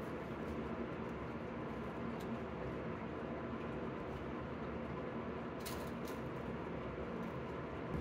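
Steady background hiss with a few faint clicks and taps, about two seconds in and again near six seconds, as a tape measure is pulled out along a plywood panel and marked with a pencil.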